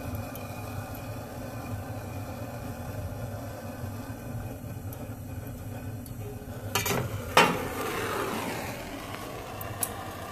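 Handheld gas torch hissing steadily as it lights diesel fuel in the burner pot of a waste-oil heater. About seven seconds in come a few metallic clanks, one of them sharp and loud.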